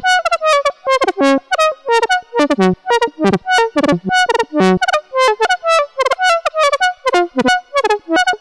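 Eowave Domino analogue monophonic synthesizer playing a fast random melody of short notes, its pitch set by a Zone B.F modulator on its CV input. The notes come about four or five a second at jumping pitches, many bending downward as they sound.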